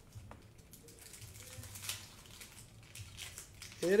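Faint rustling and light clicks of trading cards being slid against one another in the hands as the top card is eased aside. A voice starts up with a rising shout near the end.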